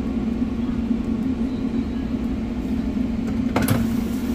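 Steady machine hum of shop kitchen equipment, with a brief knock near the end.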